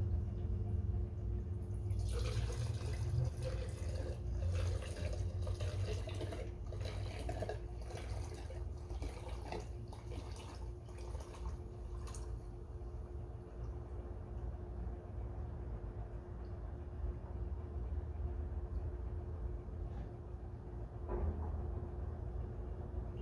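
Diesel fuel pouring from a plastic jerry can's spout into a glass beaker, splashing into the liquid. The pour is busiest and most broken-up from about 2 to 12 seconds in, then runs on as a quieter, steadier stream.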